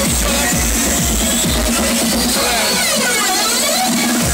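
Loud electronic dance music from a DJ set played over a sound system. The kick drum and bass drop out about two seconds in, leaving rising and falling sweeps in a build-up.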